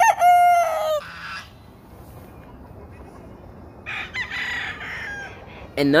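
Game roosters crowing: one loud crow about a second long right at the start, then a second, fainter and higher-pitched crow about four seconds in.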